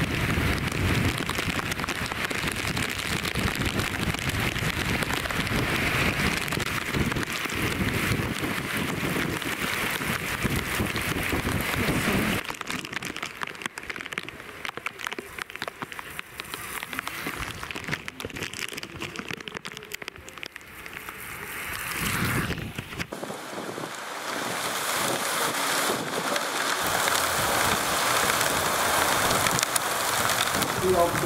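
Steady rain falling on a wet road, with wind buffeting the microphone as a low rumble for the first twelve seconds or so. The sound drops abruptly about twelve seconds in, then about 23 seconds in gives way to a louder hiss of rain that holds to the end.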